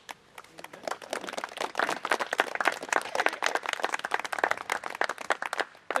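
Audience applauding. The clapping starts about half a second in, builds, and dies away just before the end.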